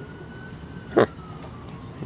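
A distant siren wailing: one faint tone slowly rising and then falling over a steady background hiss.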